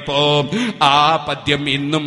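A man chanting in a melodic, drawn-out voice, holding wavering notes with short breaks between phrases.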